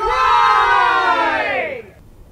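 Several men's voices yelling together in one long, loud, held shout that drops in pitch near the end.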